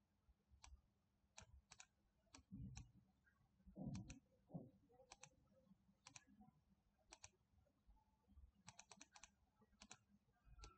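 Faint computer mouse clicks, several in quick pairs, over near silence, with a couple of soft low thumps about three to four and a half seconds in.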